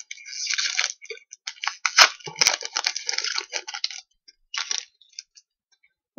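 Foil wrapper of a Magic: The Gathering booster pack crinkling and tearing as it is pulled open by hand: a run of crackles and sharp snaps for about four seconds, then one short rustle.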